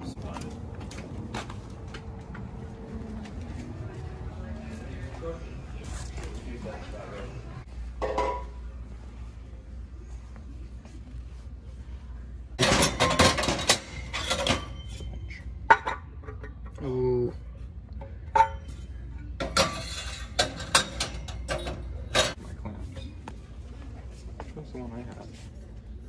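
Metal exhaust pipe sections and fittings clinking and clattering as they are handled on a store shelf. The clatter comes in two bursts, one about halfway through and one shortly before the end.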